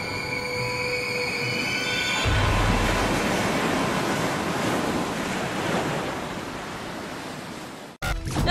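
Channel intro sound effect: a held chord of bright synthesized tones, then, about two seconds in, a deep boom followed by a long rushing, surf-like wash of noise that slowly fades away and cuts off abruptly at the end.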